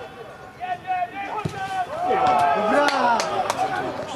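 Shouted calls from players and onlookers at a football match, with several sharp knocks near the middle and end.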